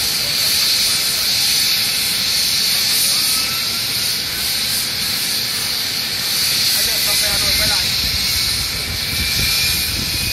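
Aircraft turbine engines running on an airport apron: a loud, steady hiss with a faint whine slowly rising in pitch, and a deeper rumble that swells from about seven seconds in.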